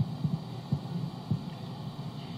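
Room noise in a pause: a steady low hum with irregular soft low thumps, several to the second, fading a little toward the end.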